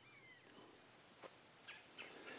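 Faint outdoor ambience: a steady high-pitched insect drone, with a couple of short falling bird whistles near the start and a few faint ticks.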